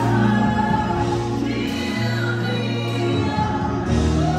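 Gospel music with choir singing over steady held low notes that change chord about every two seconds.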